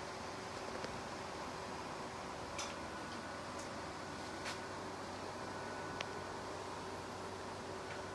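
Quiet, steady hum and hiss of a running desktop PC's fans in a small room, with a few faint ticks spread through.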